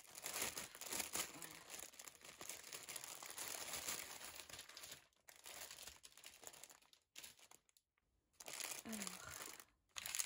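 Clear plastic packaging of a cross-stitch kit crinkling as it is handled and opened. The crackling is steady for about five seconds, then comes in shorter bursts broken by moments of silence.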